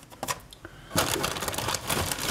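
Plastic kit-part bags rustling and crinkling as they are handled, starting about a second in after a few light clicks.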